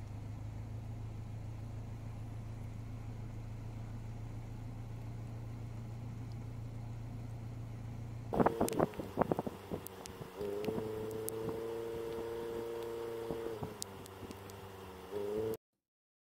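A vehicle engine idling with a steady low hum. About eight seconds in it cuts to a few knocks and clicks, then a steady humming tone for about three seconds, and the sound stops abruptly shortly before the end.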